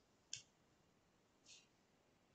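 Near silence: quiet room tone with two faint short clicks, one about a third of a second in and a softer one about a second later.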